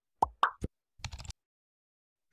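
Two quick pop sound effects in the first half second, the first dropping and the second rising in pitch, then a short click and a cluster of faint clicks about a second in.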